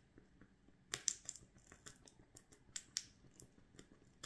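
Thin wax candle burning tipped over a bowl of water, its flame crackling with faint, irregular sharp pops, a cluster of them about a second in.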